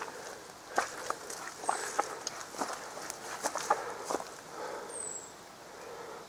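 Footsteps through forest undergrowth: irregular crunches and rustles of leaf litter and plants underfoot.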